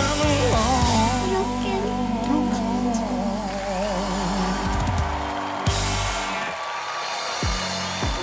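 A male singer holds a long final note with a wavering vibrato over a live rock band. About six seconds in the band stops and its low end drops out, leaving a thinner wash of sound.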